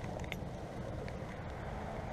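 Low, steady background rumble, with a few faint clicks near the start.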